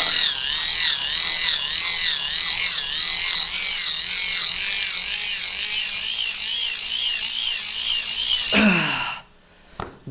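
Microwave turntable synchronous motor hand-cranked at full speed through its reduction gears as a generator, making a high whine that rises and falls about twice a second with each turn of the crank. It is being driven as hard as possible for a maximum-current test. Near the end the whine glides down and stops as the cranking ends.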